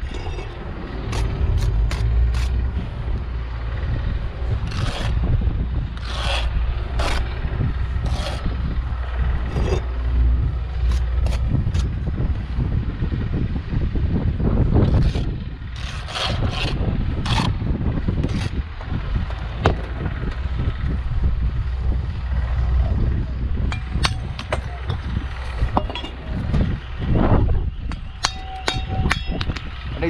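Bricklaying: a steel trowel scraping mortar on the board and along the face of perforated clay bricks, with scattered sharp clicks and knocks as bricks are set and tapped into place. A steady low rumble runs underneath.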